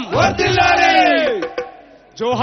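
A man's voice through a microphone and loudspeakers, a long, drawn-out rally cry held for over a second with its pitch falling at the end, with crowd voices under it.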